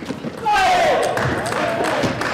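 Table tennis rally: the celluloid ball clicking off rackets and table. About half a second in, a louder wash of voices and squeaks joins the clicks and runs on.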